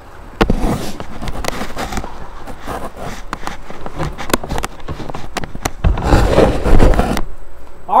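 Rustling and knocking handling noise on the microphone, full of sharp clicks, with a heavy low rumble from about six seconds in that cuts off suddenly shortly before the end.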